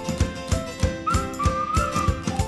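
Background music with a steady, quick drum beat under a whistle-like melody line that slides between notes.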